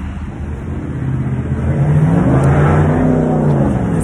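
A motor vehicle driving past on the street. Its engine note grows louder over the first two seconds and rises, then falls in pitch as it goes by.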